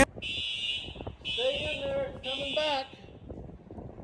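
Building fire alarm beeping three times in a row, a high electronic tone about once a second, with a person's voice under the second and third beeps.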